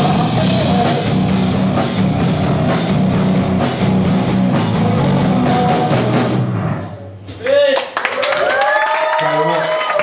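Live rock band with electric guitars, bass guitar, drums and a singer playing the last bars of a song, which stops about seven seconds in. After it, voices in the crowd whoop and cheer.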